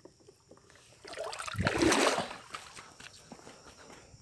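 Water sloshing and splashing in and around a plastic bucket worked in pond water: a rush of water that builds about a second in, peaks briefly and fades, with small knocks and drips around it.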